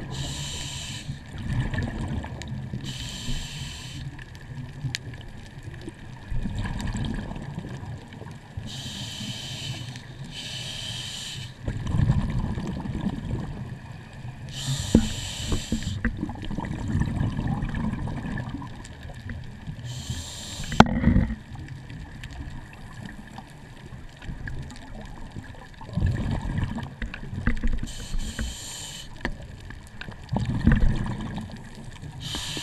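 Scuba regulator heard underwater: about seven bursts of exhaled bubbles, each about a second long, at irregular intervals over a low rumble of water against the camera housing, with a faint steady high hum throughout.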